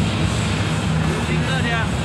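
Arena crowd noise: a steady, dense roar of many voices, with one voice calling out about one and a half seconds in.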